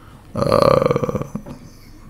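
A man's short, rasping throat sound, about a second long, made of a quick train of creaky pulses.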